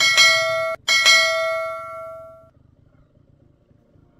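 Bell chime sound effect of a subscribe-button animation: two bright ringing strikes about a second apart. The first is cut off short, and the second rings on and fades away over about a second and a half.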